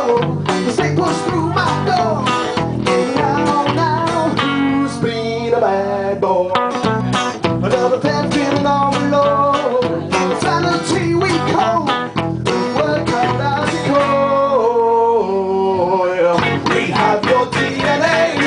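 A small rock band playing live, with electric guitar to the fore.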